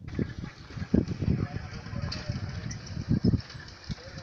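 Indistinct voices murmuring over irregular low rumbles and thumps on the microphone.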